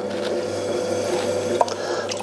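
Electric potter's wheel turning at slow speed with a steady motor hum and whine, while wet stoneware clay rubs under the potter's hands. A brief click about one and a half seconds in.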